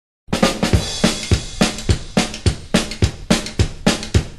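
Rockabilly drum kit playing alone as a song's intro: a fast, steady kick-and-snare beat with cymbals, starting about a quarter second in.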